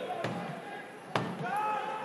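A drum in the stands beaten in a steady beat, about one stroke a second, with voices of supporters calling or chanting between the beats.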